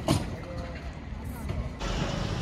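A single sharp tap right at the start as a fingertip strikes an outdoor map sign board, over a steady low rumble of outdoor background noise that turns into a brighter hiss near the end.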